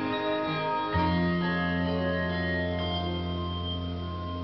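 Handbell choir ringing sustained chords, many bells held ringing at once; a low bass bell sounds about a second in and rings on steadily under the higher bells.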